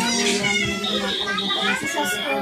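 Several voices talking over one another, children's voices among them, with music playing.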